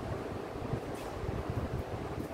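Low, uneven rumbling of air buffeting the microphone, with no speech.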